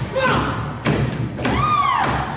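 Heavy thuds of dancers' feet on a stage floor: a strike at the start and another just before one second in. In the second half a voice gives a short call that rises and falls in pitch.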